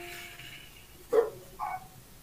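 Two short dog barks, about a second and a second and a half in, after a held tone dies away at the start.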